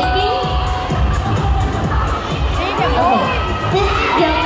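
A crowd shouting and cheering, many voices at once, over background music with a steady bass beat.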